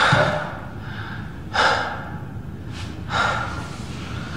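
A man breathing hard in gasps, one about every second and a half.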